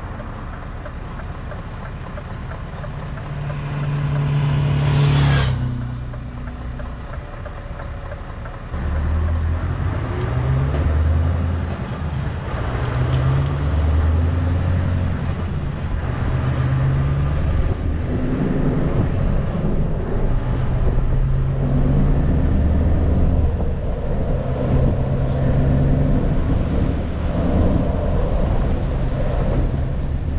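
Scania S650 V8 truck engine pulling under load, heard inside the cab with road noise, its pitch and level stepping up and down as it picks up speed. About five seconds in there is a brief rising sweep, and about nine seconds in the engine gets louder and stays that way.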